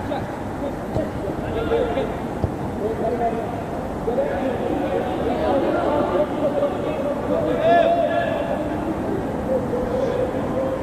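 Footballers' voices shouting and calling to one another across the pitch, echoing in a near-empty stadium, with a louder call about eight seconds in. A few sharp knocks, the ball being kicked, come near the start and about two seconds in.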